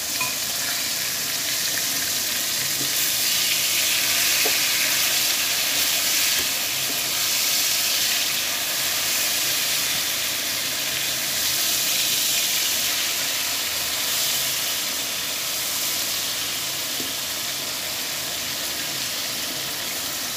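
Floured, egg-dipped colin fillets shallow-frying in hot oil in a frying pan: a steady sizzle that swells and eases a little.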